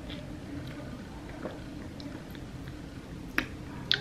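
Faint sucking of a very thick milkshake drawn through a wide reusable straw, with a few small wet clicks and a louder click near the end.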